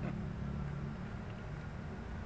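A steady low hum with faint background noise, in a pause between spoken lines.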